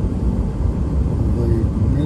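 Steady low rumble of tyre and engine noise inside a moving car's cabin on an asphalt road.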